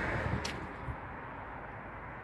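Outdoor background noise: a low, even rumble that slowly fades, with one short click about half a second in.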